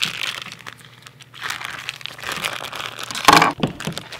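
Vacuum-sealed plastic meat packaging crinkling in spells as gloved hands peel it open and pull a raw tri-tip out, with one louder sudden sound about three seconds in.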